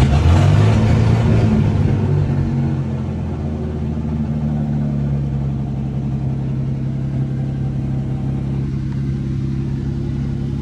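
1956 Chris-Craft Sportsman 17's inboard engine catching just after being started, running loud for the first couple of seconds and then settling into a steady idle.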